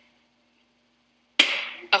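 Silence, then about one and a half seconds in a latex party balloon popped with a pick: a single sharp bang, followed by voices near the end.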